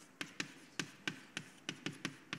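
A quick, slightly irregular run of light, sharp taps, about four to five a second.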